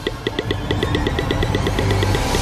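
Electronic intro sound effect: short pitched blips repeating rapidly and speeding up, about eight to ten a second, over a low rumble that grows louder.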